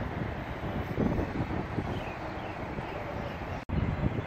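Wind buffeting the phone microphone, a steady low rumble, with a sudden brief dropout near the end.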